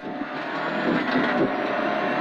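Rally car engine pulling hard as the car accelerates on a gravel stage, heard from inside the cabin along with tyre and gravel road noise, growing steadily louder.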